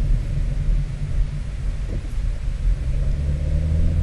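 A steady low rumble with a faint hum in it, and no speech.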